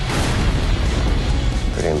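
Cinematic blast sound effect: a sudden loud boom at the start, followed by a low rumble, over dramatic trailer music.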